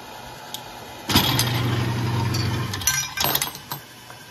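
A converted garage door opener motor starts suddenly about a second in and runs with a steady hum for under two seconds as it indexes the annealer's plate of brass cases. It stops with a quick burst of metallic clinks from brass cases and holders knocking.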